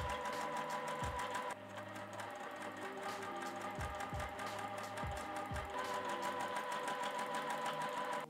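Juki sewing machine running steadily, stitching cotton quilt squares together with a fast, even run of needle ticks. Soft background music plays underneath.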